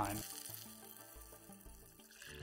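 Soft background music, a few low held notes that grow quieter until they are barely audible.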